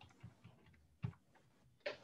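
A few faint, scattered clicks over near silence, the clearest about a second in.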